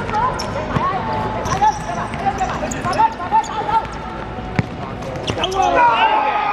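Futsal ball being kicked on a hard court, a few sharp thuds several seconds apart, under players' shouts. The voices grow louder near the end as a shot goes into the net.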